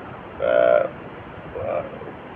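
A man's voice in a pause between phrases: one drawn-out hesitation sound about half a second in and a fainter, shorter one near the end, over a steady room hiss.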